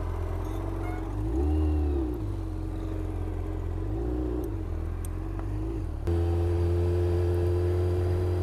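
Motorcycle engine running, revved up and back down twice. About six seconds in the sound jumps to a louder, steady drone as the bike rides along at low speed.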